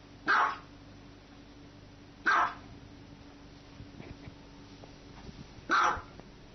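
Small white dog barking: three short, sharp barks about two to three seconds apart.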